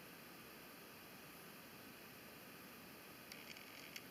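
Near silence: faint room tone, with a few faint brief sounds shortly before the end.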